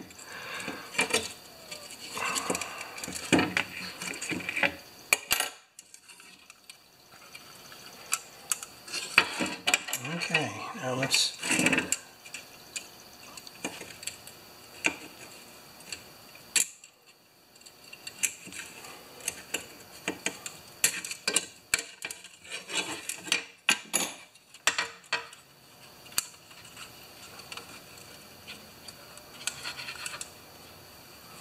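Irregular light metallic clicks and clinks, in clusters, of needle-nose pliers and the coiled recoil spring being worked by hand in the starter housing of a Honda HRA214 mower, as the spring end is bent back into shape.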